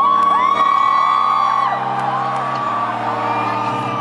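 Live band playing slow, held organ chords that change near the end, with fans in the crowd letting out several long, high whoops, loudest in the first second or two.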